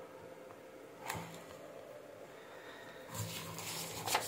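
Faint room tone with quiet handling noises: a brief rustle about a second in and a short scuffling stretch near the end as hands move test leads and probe clips on a breadboard.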